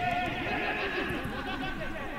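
Several people shouting and calling at once during a football attack, with many voices overlapping.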